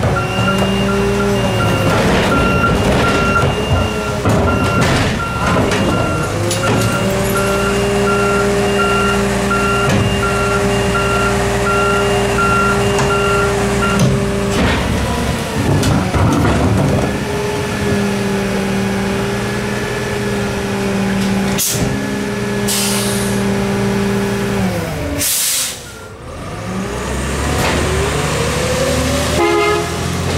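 Natural-gas garbage truck engine running at steady raised revs, with a beeping alarm sounding at an even pace for about the first half and cart clatter as recycling bins are dumped into the hopper. Several sharp air hisses come from the air brakes past the middle, then the engine revs up with a rising pitch as the truck pulls away.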